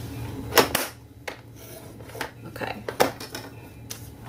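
A handful of sharp clicks and knocks from working a paper trimmer and cardstock, the loudest about half a second in and about three seconds in.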